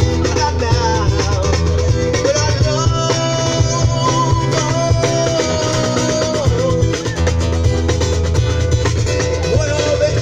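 Live music from a street duo: a singing voice over guitar and a steady bass line, with a long held note in the middle.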